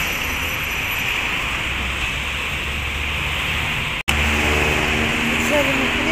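Steady outdoor street noise with a low rumble, broken by a sudden cut about four seconds in, after which voices are heard.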